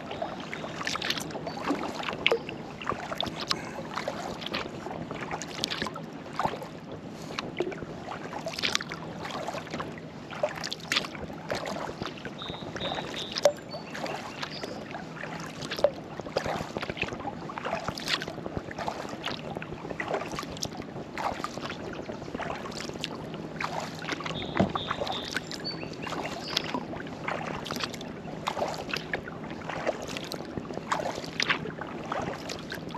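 Kayak paddle strokes: the blades dip and splash, and water drips and laps against the hull every second or two. A few short high chirps come twice, once near the middle and once later on.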